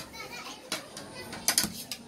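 A few light knocks on a wooden table, one about a third of the way in and a small cluster near the end, under faint voices.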